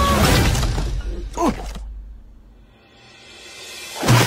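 A loud crash with shattering at the start, fading away over about two seconds, with music under it.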